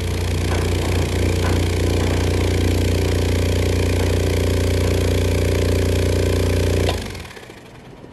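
General Electric CG monitor-top refrigerator compressor, a single-cylinder unit on a four-pole 60 Hz motor, running steadily unloaded near 1,800 rpm with a low hum, its unloader blowing air out. It has no oil sump, so it never builds oil pressure and the unloader never loads the compressor; to the owner it sounds normal. It stops about seven seconds in.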